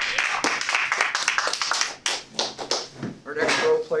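A small audience applauding: a brisk patter of hand claps that dies away about halfway through, followed by low talk in the room.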